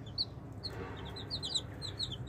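Baby chicks peeping: short, high, falling cheeps, a few at first, then quick and overlapping from about a second in.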